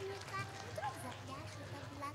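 Faint murmur of children's voices in an audience.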